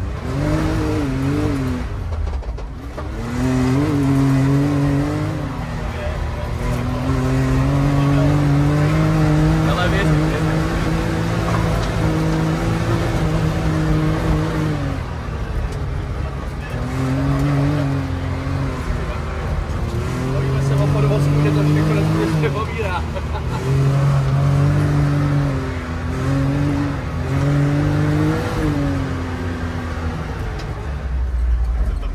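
Can-Am Maverick side-by-side engine revving hard from inside the open cab. Its pitch climbs, holds and drops again about every two to four seconds as the machine accelerates and backs off along a dirt track.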